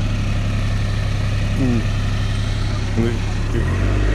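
A vehicle engine idling with a steady low rumble that shifts slightly near the end, with a faint voice heard briefly twice.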